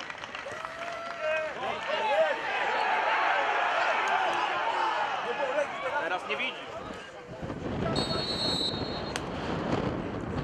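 Pitch-side sound of a football match: shouting voices of players and spectators during a free kick. From about seven seconds the sound turns to a fuller crowd noise, with a short high whistle blast a second later.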